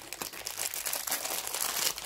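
Plastic wrapping crinkling and rustling as jewelry is handled, a continuous run of small crackles.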